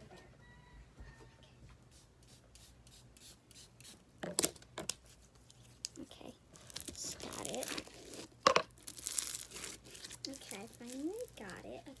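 Sticky glitter slime being stretched and squished by hand, giving sharp crackles and tearing, crinkly sounds, loudest about four to five seconds in and again between six and ten seconds in.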